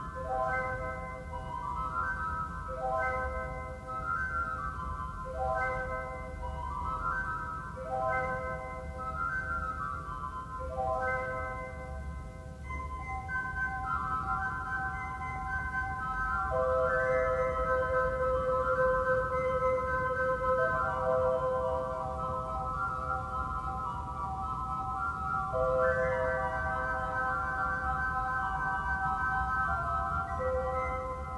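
Pipe organ playing on its flute stops: soft, pure sustained notes in slow-moving chords, the notes changing about every second, growing louder about halfway through.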